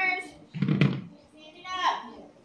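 Speech: a voice talking in short phrases, with a brief louder burst under a second in.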